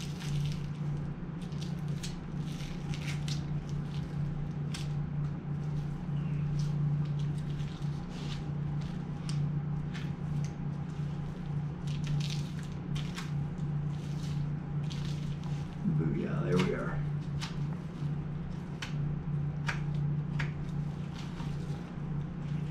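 A knife cutting and peeling meat and sinew away from an elk hindquarter, making scattered short wet slicing and squishing sounds over a steady low hum.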